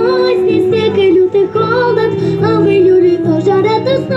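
Music: a girl singing a pop song over a backing track, her voice holding wavering, drawn-out notes above steady chords.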